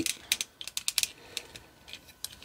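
Sharp plastic clicks and taps from a Beast Wars Cheetor transforming action figure as it is handled and twisted at its stiff waist joint: a quick, irregular run of about eight clicks.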